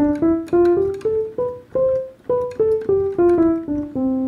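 The C major scale played as single notes on a MIDI keyboard with a piano sound: it steps up the white keys, about four notes a second, to the top C, which is held a little longer, then steps back down to C.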